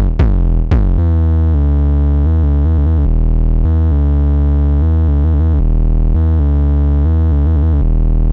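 Behringer Neutron analog synthesizer: two 808-style kick hits with falling pitch in the first second, then a sustained deep bass line of held notes played from a keyboard, stepping between pitches with a few quick note changes.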